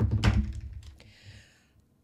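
Computer keys clicking at the desk, with a low thump at the start that rumbles and fades over about a second and a half.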